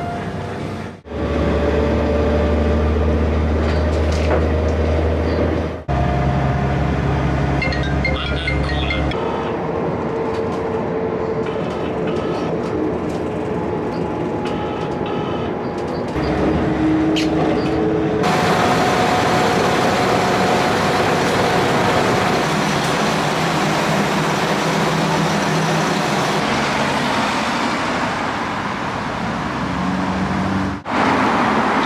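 Inside a moving passenger train: low rumble with steady motor whine tones, broken by several abrupt cuts. A little past halfway it changes to an even outdoor road-traffic noise.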